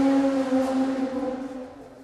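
A steady hum at one pitch with a few overtones, fading away over the two seconds.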